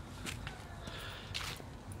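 Footsteps of a person walking on a park path: a few faint steps.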